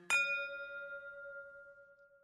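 A single bright bell-like chime, struck once and left to ring out and fade slowly, as a logo sting. The tail of a soft sustained music chord dies away just before it.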